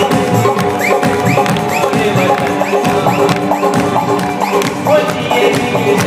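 Live band playing an instrumental passage of a Sindhi folk-style song: held keyboard tones over a steady hand-drum and percussion beat, with a run of short repeated rising swoops in the melody.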